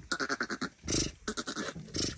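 A ewe's low, rapid guttural rumbling in two short runs, the soft mothering call a ewe makes to her newborn lamb while licking it dry.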